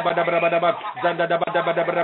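A man's voice praying aloud in rapid, repeated syllables on one steady held pitch, with a brief breath break near the middle, heard over a telephone line.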